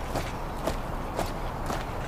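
A column of ceremonial honor guard soldiers marching in step, their boots striking the ground together in a steady rhythm of about two steps a second.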